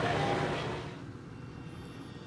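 Steady low background rumble of ambient noise, dropping to a quieter hum about a second in.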